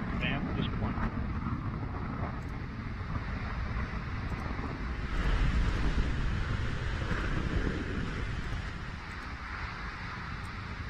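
Atlas V rocket's RD-180 first-stage engine heard during its climb after liftoff: a deep, steady rumble that grows louder about five seconds in and then slowly fades.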